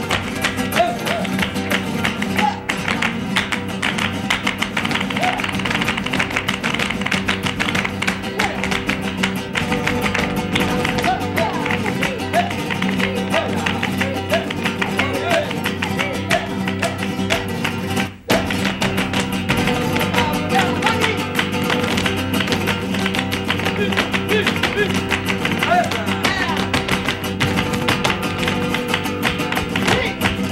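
Flamenco music: guitar playing under dense, sharp percussive footwork and clapping from the dancers. The sound drops out for a split second a little past halfway.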